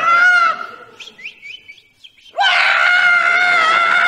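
A person's high-pitched held scream that breaks off about half a second in, then a few short squeaky chirps. A second long scream on a steady pitch starts a little past halfway.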